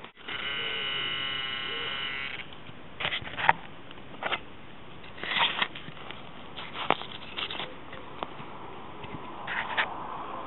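Metal detector giving a steady buzzing target tone for about two seconds, signalling a buried metal object, followed by scattered short clicks and scrapes.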